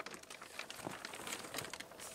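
Faint crinkling and rustling of plastic wrapping with a few light handling clicks as a kayak is handled on it.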